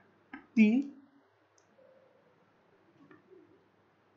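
A single short click about a third of a second in, just before a man speaks one syllable; the rest is faint room tone.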